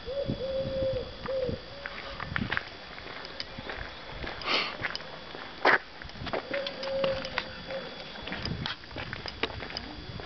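A dove cooing: a low hooting call in a few held notes at the start, repeated about two-thirds of the way in. Footsteps and light handling clicks run throughout, with one sharp knock a little past halfway.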